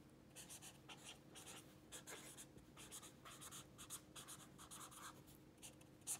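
Felt-tip marker writing on lined notebook paper: a faint run of short scratchy strokes as words are written, starting about a third of a second in.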